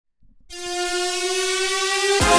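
A small handheld toy whistle blown in one long note. The tone is steady and horn-like, rich in overtones, starts about half a second in and rises slightly in pitch.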